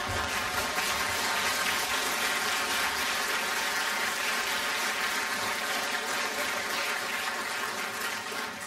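Water pouring steadily from a spout into a well trough, an even splashing rush.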